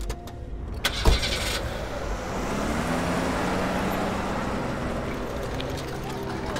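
A loud thump about a second in, then a car engine running, its pitch rising as the car pulls away.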